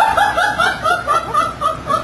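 A person laughing: a quick run of short, high-pitched 'ha' syllables, about five a second, trailing off toward the end.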